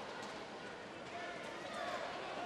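Water splashing from water polo players swimming up an indoor pool, with faint voices in the background.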